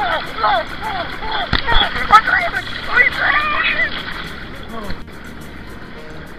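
Indistinct voices calling out over water splashing and sloshing in a paddling pool, with a sharp knock about one and a half seconds in. The voices stop about four seconds in, leaving the water noise.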